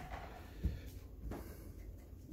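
A dog hopping off a raised cot and walking away across the floor: a few faint thumps of paws, the first about half a second in and more a little after a second.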